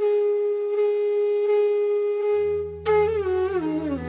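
Intro music: a wind instrument holds one long steady note, then a low drone comes in past the halfway point and the wind instrument moves into a melody with sliding, ornamented pitch bends.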